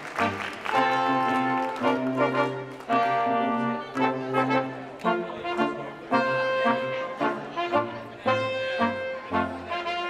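Live brass quintet of two trumpets, French horn, trombone and tuba playing a slow piece, with held notes and chords that change every second or so.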